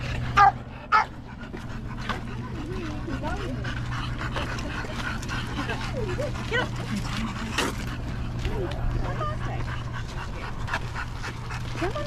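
A dog barks twice in quick succession, loudly, near the start, then outdoor chatter of people and dogs goes on over a steady low rumble.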